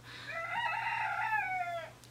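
A rooster crowing once outside a window: one long cock-a-doodle-doo lasting about a second and a half, dipping in pitch as it ends, fairly faint compared with the voice in the room.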